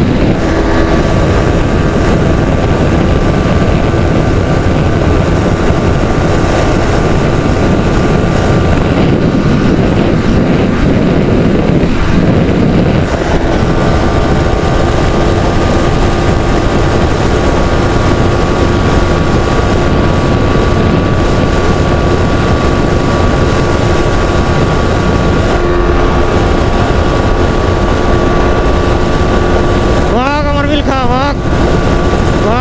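Yamaha R15 V3 sport bike's 155 cc single-cylinder engine running at a steady high-speed cruise, its note held almost constant, under heavy wind noise on the microphone.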